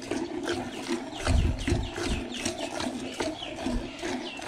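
Hand-milking a cow: squirts of milk from the teats hiss into the froth in a pail, about three a second in an even rhythm. A low rumble comes about a second and a half in.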